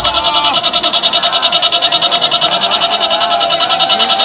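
Electronic dance music from a DJ set over a festival sound system, in a breakdown with the bass cut out: a high synth sound stutters in rapid, even pulses.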